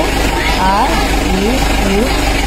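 Short drawn-out spoken syllables with rising pitch, twice, over a steady low hum.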